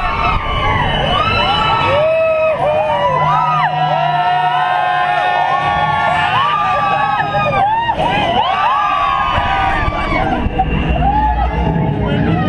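A carful of riders screaming and shrieking together, many voices overlapping in long rising and falling yells, over a low rumble from the drop ride they are on.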